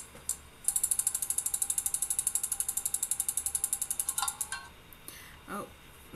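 Spinning name-picker wheel sound effect: a rapid run of clicks, about ten a second, lasting some three and a half seconds and then stopping as the wheel comes to rest on a name.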